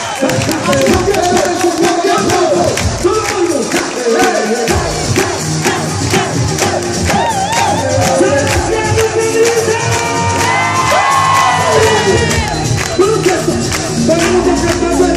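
Live concert music with a steady beat, a crowd cheering and shouting over it; the bass drops out and comes back in about five seconds in.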